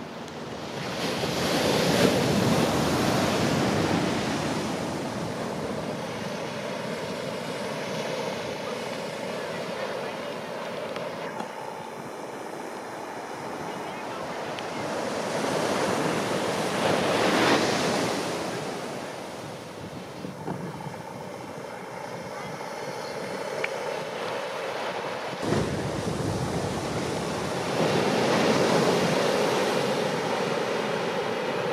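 Ocean surf breaking on the shore: a continuous wash of waves that swells into a loud crash three times, near the start, in the middle and near the end, the first the loudest.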